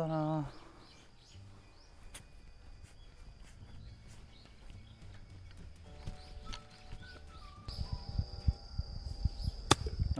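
A single sharp crack of a utility club striking a golf ball, near the end, over a faint outdoor background with small bird chirps; the shot comes off as a flyer.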